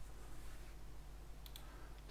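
Computer mouse button clicked: two quick sharp ticks about one and a half seconds in, over a faint steady low hum.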